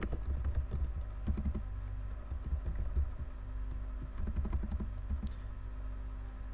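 Typing on a computer keyboard, a few short runs of keystrokes that stop a little before the end, over a steady low hum.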